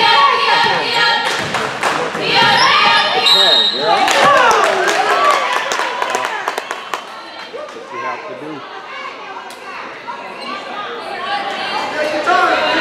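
Basketball bouncing on a hardwood gym floor amid overlapping voices of players and spectators calling out, echoing in a large gym. The voices die down about halfway through.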